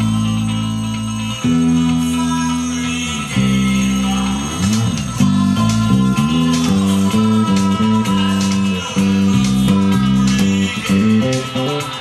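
Electric bass guitar played fingerstyle, carrying an easygoing bossa-style bassline over the song's backing with guitar chords and light percussion. It opens with longer held notes, then turns into a busier bouncing pattern of short notes from about five seconds in.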